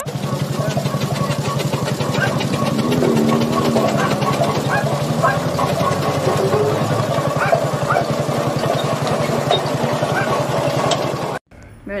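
Road roller's diesel engine running with a steady, fast knocking pulse, with a person's voice rising over it about three seconds in. The engine cuts off abruptly near the end.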